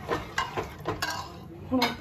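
Steel ladle stirring rice and water in an aluminium pressure cooker, clinking and scraping against the pot several times in the first second.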